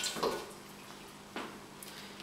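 Quiet kitchen room tone broken by one sharp click about one and a half seconds in and a couple of lighter ticks near the end, from small kitchen items being handled.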